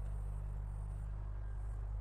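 A steady low hum, even and unchanging, with a faint background hiss and no distinct events.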